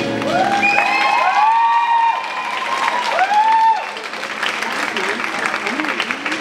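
Audience clapping and cheering as the music ends, with several long whoops in the first few seconds. The clapping then carries on a little quieter.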